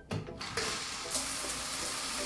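Shower turned on: the water spray starts about half a second in and runs as a steady hiss, a little stronger from about a second in.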